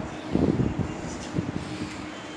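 Rustling handling noise over a steady background hum, with a brief tick about one and a half seconds in.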